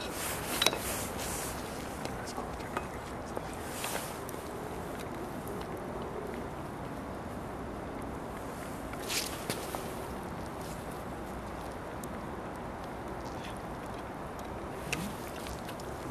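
Steady outdoor background noise with a few short, sharp clinks about a second, four and nine seconds in, from a spoon and a steel pot lid handled at a cooking pot.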